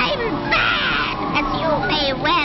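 Harsh, caw-like bird squawks from a cartoon soundtrack, with gliding cries; a loud, raspy squawk falls in pitch about half a second in.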